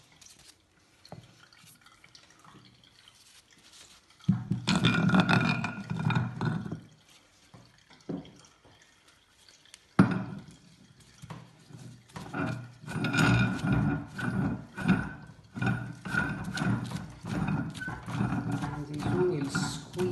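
Wooden and metal handling noises as a basket fruit press is set up, with a wooden pressing block laid in and the handle fitted onto the threaded screw, and a sharp click about halfway through. People talk in the background for much of the second half.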